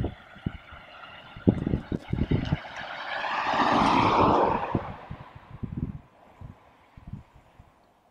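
A small car passing along the road, its engine and tyre noise swelling to a peak about four seconds in and fading away. Low thuds of footsteps on the microphone come at intervals throughout.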